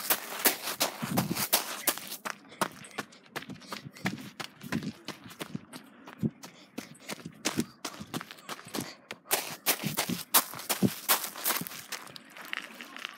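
Footsteps on a rocky, sandy shore: a quick, irregular series of scuffs and clicks.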